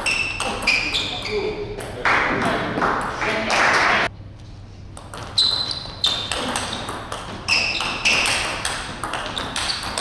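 Table tennis ball clicking off the table and the players' rackets in quick alternation, with a short high ring on each hit. The clicking runs for about two seconds, breaks off for a stretch of noise and a brief lull, then picks up again with a new rally about five seconds in.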